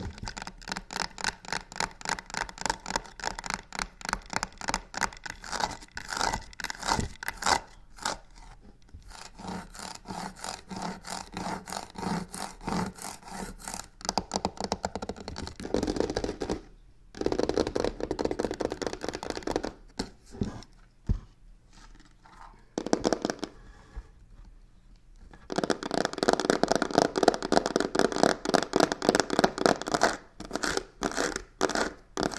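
Long fingernails fast scratching and tapping on a crocodile-embossed leather box, in quick runs of strokes. The runs break off briefly about halfway, go sparse for a few seconds, then come back densest near the end.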